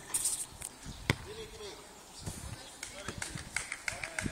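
A futnet ball's sharp knock about a second in, with a few smaller knocks later.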